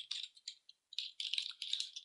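Computer keyboard keys clicking as a word is typed, in two quick runs of keystrokes: a short one at the start and a longer one from about a second in.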